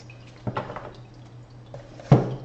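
Tarot cards handled and shuffled together in the hand, a short burst of card rustle and clicks about half a second in. Under it, a steady faint trickle and drip of water with a low hum.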